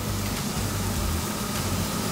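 Steady sizzling hiss of food frying in hot oil in a frying pan, with a low hum underneath.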